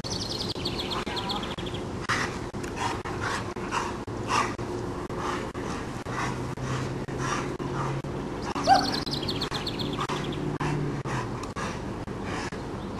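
Two Boerboel dogs playing rough together: a run of short noisy breaths and scuffles, with one short loud bark about nine seconds in. A bird trills in the background near the start and again around the bark.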